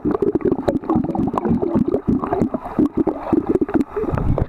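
Muffled churning and bubbling of pool water, heard through a microphone held underwater, with many irregular small clicks and knocks.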